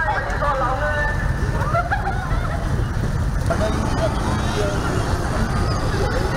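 Street ambience: indistinct chatter of people's voices over a steady low rumble of traffic.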